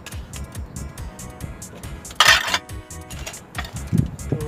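Background music with a steady beat. A little over two seconds in, a short, loud scraping clatter as a glass mold panel is pried off the cast cement pot.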